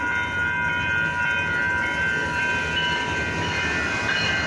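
Amtrak passenger train rumbling past a grade crossing. Several steady high ringing tones hold throughout over the train's low rumble.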